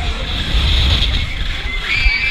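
Wind rushing and buffeting over the microphone of a camera riding on a swinging fairground thrill ride as it sweeps through the air, with riders' screams rising again near the end.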